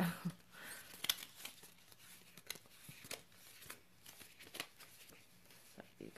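A short laugh, then faint, irregular paper rustling and light clicks of paper being handled, as when pages are leafed through.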